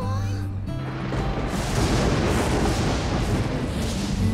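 Thunder rumble sound effect over dramatic background music, swelling from about a second in and easing off near the end.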